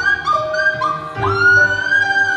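Women singing in harmony with a live band: a run of short stepped notes, then about a second in one voice slides up into a long, high held note.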